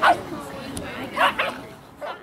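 A dog barking: one sharp bark at the start and another short one about a second and a quarter in, with people's voices.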